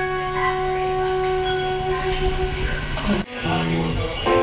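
Saxophone holding one long note over a steady low accompaniment, breaking off about three seconds in; after a brief gap, new music with several held notes starts.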